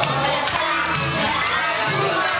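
A roomful of young children shouting and cheering, with music playing underneath.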